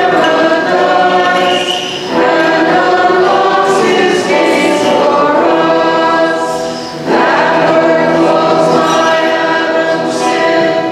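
A group of voices singing a slow liturgical hymn together in long sustained phrases, with short pauses for breath about two seconds in and about seven seconds in.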